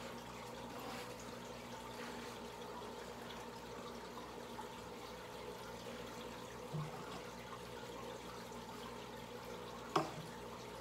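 Aquarium water bubbling and trickling from the air-driven sponge filters and air stream, with a steady faint hum underneath. A short low knock sounds about seven seconds in.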